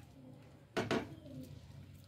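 Two quick knocks a fraction of a second apart, about a second in, against a low steady background.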